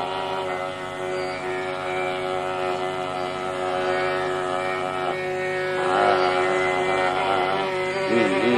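Carnatic classical music in raga Pantuvarali. A long held note with rich overtones sounds over a steady tanpura drone, then breaks off about five seconds in into a gliding, ornamented phrase.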